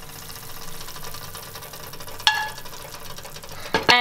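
Faint steady sizzling of seared chicken in coconut-milk curry in a pot, with a single short metallic clink about two seconds in.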